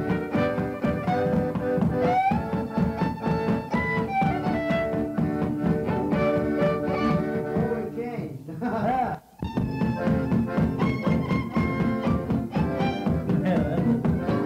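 Old-time fiddle tune played on fiddle with guitar backing. The music thins and briefly drops out about nine seconds in, then picks up again.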